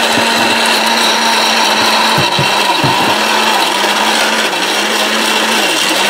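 ORPAT electric mixer grinder running at speed, its motor and blades grinding turmeric into a paste in the steel jar. The steady motor hum dips briefly in pitch near the end.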